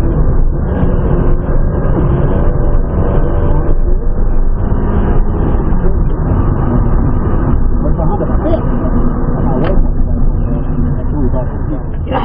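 Honda Fit's four-cylinder engine pulling hard, heard inside the cabin over road and tyre rumble, rising in pitch through the first few seconds as the car accelerates, then easing off as the car brakes.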